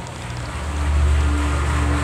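A steady low rumble that swells about half a second in, with a faint steady hum held above it, in a pause between spoken phrases.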